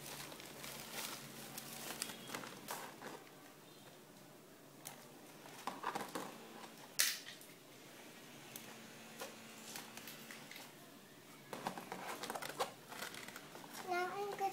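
Handling noise of plastic dolls being moved about on a table: light knocks, clicks and rustles of doll dresses and hair, with one sharper click about seven seconds in.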